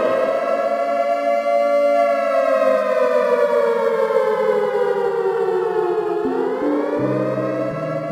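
Air-raid-style siren wailing. Its pitch holds high, sinks slowly over about six seconds, then climbs again, with low music notes beneath.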